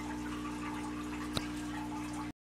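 Steady low electrical hum with a single sharp click about a second and a half in.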